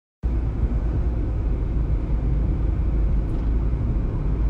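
Steady low rumbling background noise, starting abruptly a moment in, with no speech over it.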